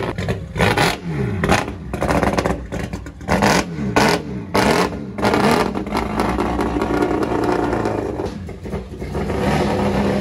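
Liberty Walk Super Silhouette S15 Silvia race car's four-rotor rotary engine being blipped: the revs rise and fall sharply several times in the first half, then it runs at a lower, steadier pitch as the car moves off.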